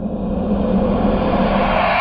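A rising whoosh sound effect (a riser): a rush of noise that swells steadily louder and higher in pitch, over a steady low hum.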